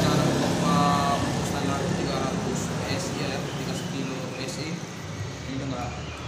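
A few sharp clicks of small parts being handled on a motorcycle's fuel-pump assembly, over a steady background rumble.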